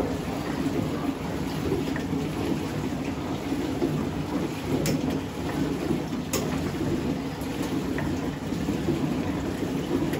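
Steady running and splashing of brine from a wooden hand pump, with a few faint clicks.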